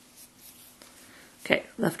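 Faint handling sounds of metal knitting needles and yarn being worked, with a few light clicks. About a second and a half in, a woman starts speaking.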